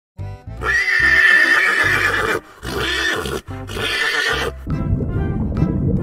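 A horse neighing: one long whinny, then two shorter ones, over background music. The music carries on alone from about five seconds in.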